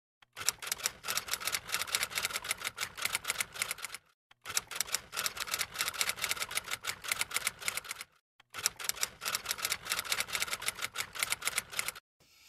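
Typewriter typing sound effect: rapid key clicks in three runs of about three and a half seconds each, broken by short pauses about four and eight seconds in.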